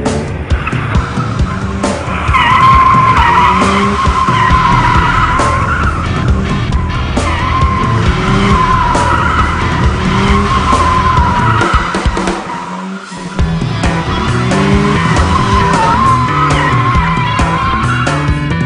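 Car tyres squealing in a long, wavering screech as a sedan drifts in circles, breaking off briefly about twelve seconds in.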